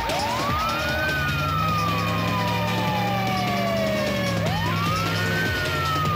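Police siren wailing. Each cycle rises quickly in pitch over about a second, then falls slowly over about three seconds. A second cycle begins shortly before the end.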